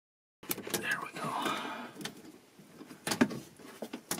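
Electrical cables and tie wraps being handled in a cramped cabinet: rustling and scraping with several sharp clicks, two of them close together near the end. It all starts about half a second in, after a moment of dead silence.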